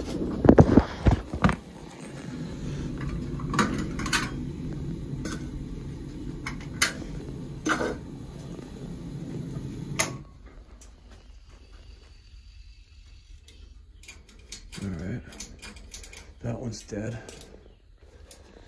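Heating boiler firing and running with a steady low rumble, with scattered clicks and knocks of handling; about ten seconds in the rumble stops abruptly, leaving quieter handling noises. The boiler is running because both zones are calling for heat, the sign of a zone valve stuck with its end switch closed.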